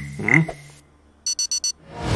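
Four rapid high-pitched electronic beeps, a cartoon sound effect, starting a little past the middle after a brief "hmm".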